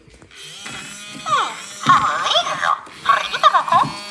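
Interactive electronic plush toy chirping and babbling in a high, warbling electronic voice, in two bursts from about a second in.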